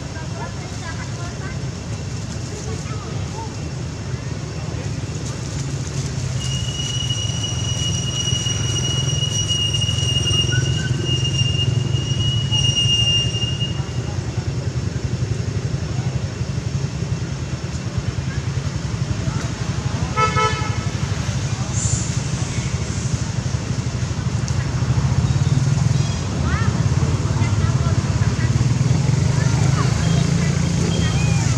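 Outdoor background of a steady low rumble, like distant road traffic, with a long steady high-pitched tone through the middle and a short horn toot about two-thirds of the way in.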